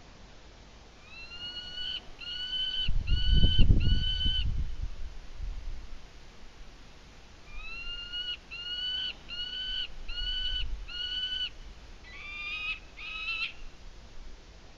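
An unseen animal calling repeatedly: a series of four short calls about 0.8 s apart, a pause, then a series of five and two or three more near the end, each call rising slightly at its start. A low rumble, the loudest sound, runs under the end of the first series.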